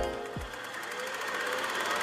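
Short channel-intro music sting: a noisy swell with a fine, fast flutter running through it and a low thump about half a second in.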